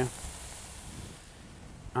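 Steaks sizzling faintly on a hot barbecue grill as they are lifted off with tongs, the hiss fading away over the first second or so.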